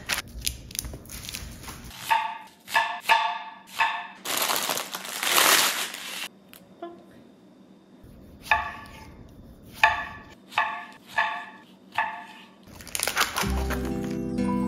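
Kitchen knife slicing tomatoes on a wooden cutting board: two runs of quick cuts, about two a second, each ending with a knock on the board. A couple of seconds of rustling between the runs, and music coming in near the end.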